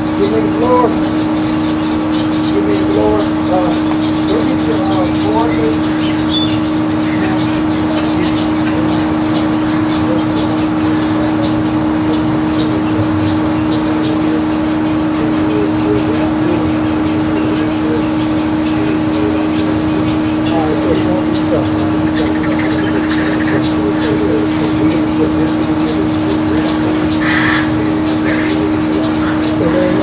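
Indistinct voices of people talking at a distance, over a steady low hum.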